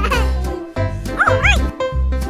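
Upbeat children's background music with a steady bass beat. About a second and a quarter in, two short high yelps that rise and fall sound over the music.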